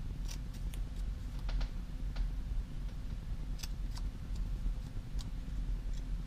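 Scissors snipping, a scattering of short sharp irregular clicks, over a steady low hum.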